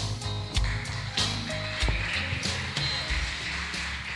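Karaoke backing track with drums and bass playing out at the end of a song, without vocals, slowly fading.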